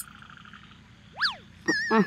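Playful cartoon-style sound effects: a short fluttering trill, then a quick whistle sweeping up and straight back down about a second in, then a warbling tone with a couple of soft thumps near the end.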